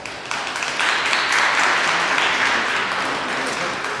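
Rink audience applauding as a skater finishes his program. The clapping swells sharply about a third of a second in, then holds steady.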